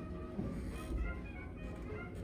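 Electronic keyboard playing held, sustained chords.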